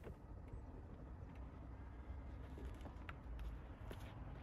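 Faint low outdoor rumble with a few soft clicks in the second half as the Peugeot 508's side door is unlatched and swung open.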